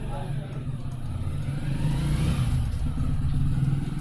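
A motor vehicle engine running, a steady low hum that grows louder over the first couple of seconds and then holds.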